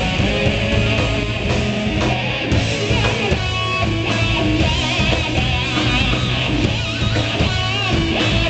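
Live rock band playing loud through amplifiers: electric guitar, bass guitar and drums together. In the second half a high line wavers and bends in pitch above the band.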